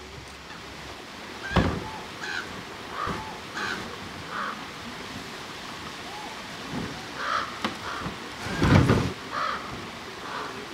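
Dull thumps and knocks as a grizzly bear paws at and pushes a heavy plastic bear-resistant trash cart, the loudest a longer low thud near the end. A bird calls repeatedly with short calls throughout.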